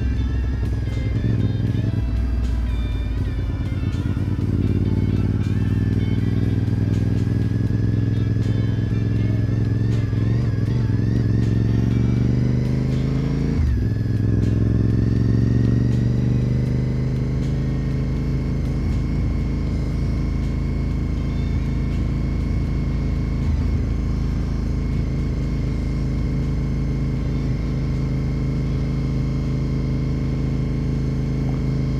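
A 2004 Honda RC51 SP2's 1000cc V-twin engine runs under way, its pitch wandering and rising as the bike pulls through the revs in the first half. A sudden dip about halfway through fits a gear change, and the engine then settles to a steady cruise for the rest.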